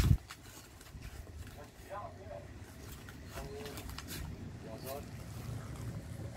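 Boston Terrier chewing and tearing a cardboard toilet paper roll: scattered crunches and clicks, with three short whine-like pitched sounds about two, three and a half, and five seconds in.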